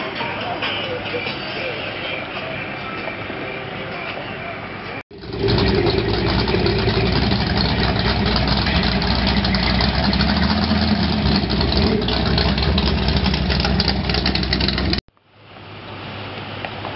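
Outdoor roadside background with voices, then, after a cut about five seconds in, a loud car engine running with a deep low rumble as a hot-rodded car with a tall hood scoop passes. The engine sound cuts off abruptly near the end, leaving quieter background.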